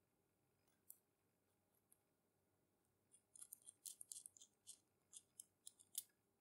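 Faint, high-pitched metallic ticking and scraping as the wing nut of an antique watchmaker vise is turned by hand along its worn, rusty bolt thread. There are a couple of single ticks early, then a quick run of them from about three seconds in.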